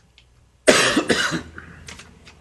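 A person coughing twice in quick succession, about two-thirds of a second in.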